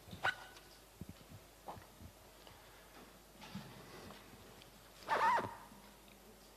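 Handheld microphone being picked up from a table: a sharp knock just after the start, then a few lighter knocks and rubs of handling noise. About five seconds in comes a louder, short sound with a wavering pitch.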